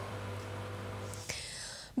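Steady low hum with faint room noise, which cuts off abruptly a little over a second in, leaving a brief soft hiss that fades away.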